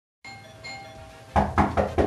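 A faint doorbell chime, then a run of rapid, loud knocks on a front door, about five a second, starting just over a second in.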